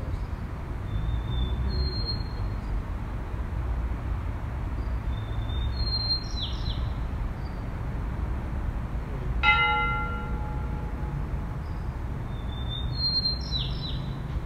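A bell struck once about two-thirds of the way through, ringing with several clear tones that fade over a second or two. A bird calls three times, each call a short high whistle then a falling slur, over a steady low rumble.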